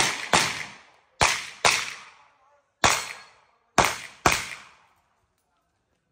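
Pistol fire in a practical-shooting course of fire: seven sharp shots, mostly in quick pairs (double taps on each target) with one single shot in between, each ringing off the surrounding concrete walls.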